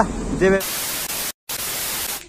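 A burst of static hiss, even and unvarying, lasting about a second and a half with a brief dead-silent break in the middle, starting and stopping abruptly: an edited-in static transition effect over a cut.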